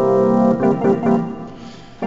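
Roland D-50 synthesizer playing chords: one chord held for about half a second, then short repeated chords about four a second that fade near the end.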